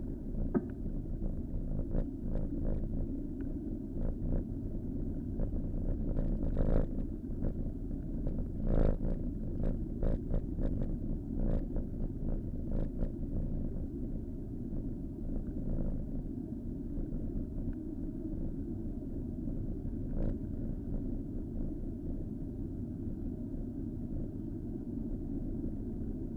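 Steady low wind and road rumble on the microphone of a camera riding on a moving bicycle, with traffic noise mixed in. Between about six and thirteen seconds in comes a run of sharp clicks and knocks, with one more about twenty seconds in.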